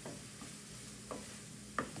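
Wooden spoon stirring onion and spices sautéing in a skillet, with a faint steady sizzle and four short scrapes of the spoon against the pan.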